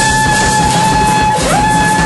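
Electric guitar in an avant-rock duo holding long high notes that slide up into pitch, with a second note swooping up about one and a half seconds in, over busy drum-kit playing.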